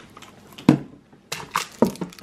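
Cones of embroidery thread being set down and knocked together on a wooden table beside a cardboard box: about four sharp knocks in the second half, with handling rustle between them.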